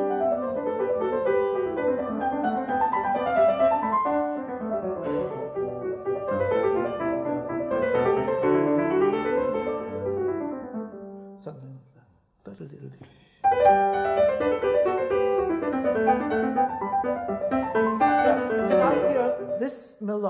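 A grand piano playing a flowing passage with several lines moving at once. It breaks off briefly about eleven and a half seconds in, then starts again.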